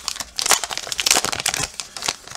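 Foil wrapper of a 2020-21 Upper Deck Series 2 hockey card pack crinkling in the hands as it is torn open and the cards are drawn out: a dense run of crackles.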